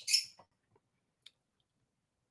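The tail of a spoken word, then near silence broken by a single faint click about a second in: a computer mouse click as the PDF page is turned.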